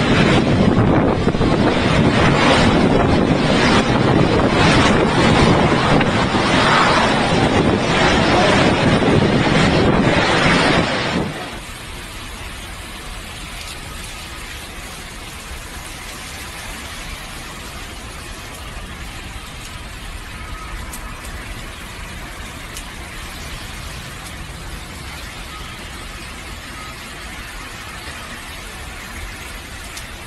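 Hurricane-force wind and driving rain battering the microphone, loud and gusting, for about the first eleven seconds. Then it cuts suddenly to a much quieter, steady hiss of wind and rain.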